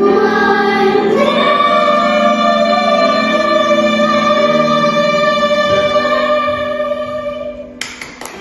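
A group of children singing together, holding one long final note for several seconds before it fades out. A brief knock and rustle near the end, as the phone recording it is moved.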